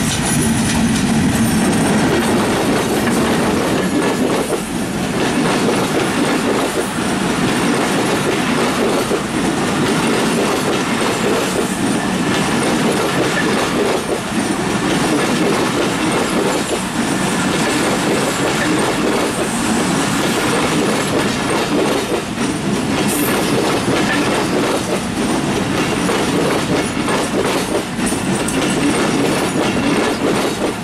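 A diesel-hauled passenger train passing close by: Bangladesh Railway 64-series diesel locomotive going past at the start, then a long run of PT Inka broad-gauge passenger coaches. The coaches make a steady, loud wheel-and-rail noise with a clickety-clack of wheels over rail joints and points.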